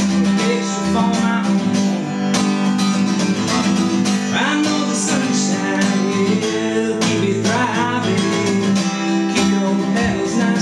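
Acoustic guitar strummed in a steady rhythm.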